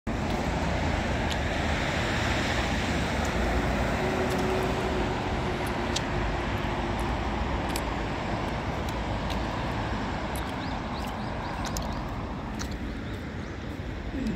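Road traffic on a wide city street: a steady rumble of cars and buses, louder in the first half and easing off toward the end.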